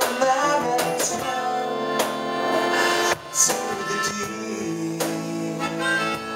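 Acoustic guitar strummed about once a beat under a melodica playing held notes, in an instrumental stretch of a live acoustic pop-rock song.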